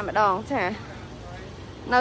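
A person speaking briefly, then about a second of steady low background noise before the voice starts again.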